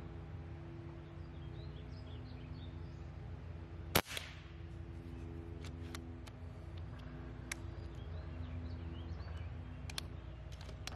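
A sub-500 fps .22 calibre Reximex Throne Gen2 PCP air rifle firing a single shot about four seconds in, one sharp crack. Over the following seconds the side lever is cycled and the next pellet loaded, a few light metallic clicks.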